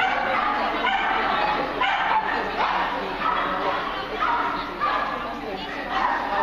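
Dogs barking and yipping over and over, short high-pitched calls, over a steady background of people's voices.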